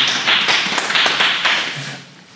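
A small audience applauding, with individual claps distinct, thinning out near the end.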